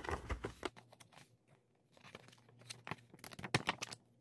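A glossy paper CD booklet and its packaging being handled and folded: paper rustling with a string of small clicks and taps. There is a quieter stretch in the middle.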